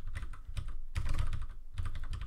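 Fast typing on a computer keyboard: a quick, dense run of key clicks broken by two short pauses.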